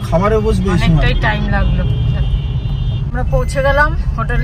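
Steady low engine and road rumble inside the cabin of a small car moving slowly, with people talking over it.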